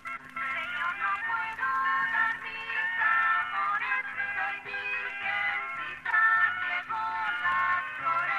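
An old 78 rpm record playing music on a wind-up Victrola phonograph. The sound is thin and narrow, with little bass and nothing above the upper midrange.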